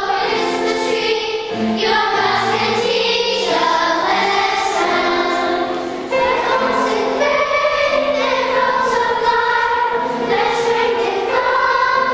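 Children's choir singing in unison, with held notes that change pitch throughout.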